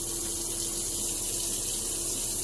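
Water running steadily from a tap into a bathroom sink, an even hiss with a faint steady hum under it.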